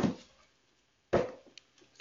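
A deck of tarot cards set down on a table and cut, making two short slaps about a second apart.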